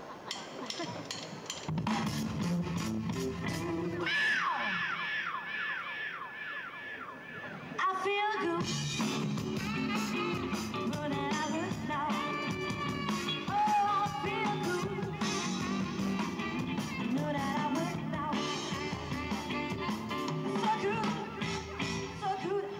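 Live rock band playing, with electric guitars, drum kit and keyboard coming in about two seconds in. After a brief break around eight seconds, a voice sings over the band.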